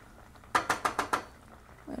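Wooden spoon scraping and knocking inside a plastic tub of mascarpone: a quick run of clicks and scrapes lasting about half a second, starting about half a second in.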